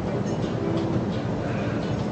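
Steady low rumble of a busy restaurant's room noise, with faint background voices over it.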